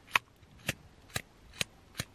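Empty disposable lighter being struck again and again, four sharp clicks of its flint wheel about half a second apart. It sparks without lighting: the lighter is out of fuel.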